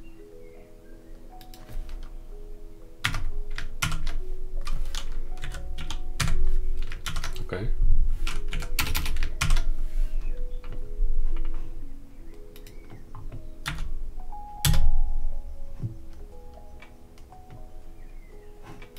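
Typing on a computer keyboard: irregular key clicks with a few heavier key strikes, over background music with long held notes.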